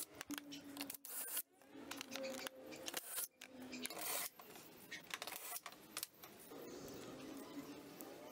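Faint clicks and knocks from tools and wood being handled on a workbench, with a few brief faint hums.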